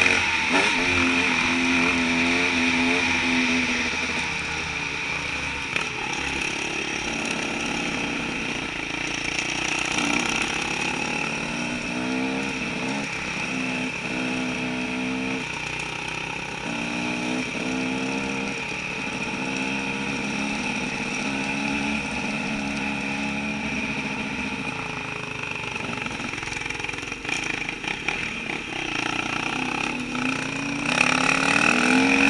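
Enduro dirt bike engine heard from the rider's own bike, revving up and easing off over and over as the throttle opens and closes and the gears change on a twisting trail.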